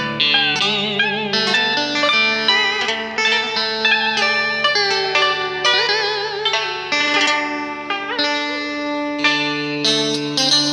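Instrumental karaoke backing music: a guitar plays a melody of bent, wavering notes over a steady low bass line, with no voice. The lead is typical of the scalloped-fret electric guitar of Vietnamese cải lương.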